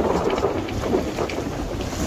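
Wind buffeting the microphone in an irregular low rumble, over the rush and splash of choppy water along the hull of a Hawk 20 day boat under sail.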